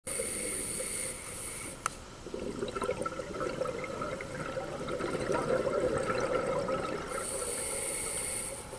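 Scuba regulator breathing heard underwater. A hissing inhale runs for the first couple of seconds, with a sharp click just before the two-second mark. A long stretch of bubbling exhaust follows, and another hissing inhale starts about seven seconds in.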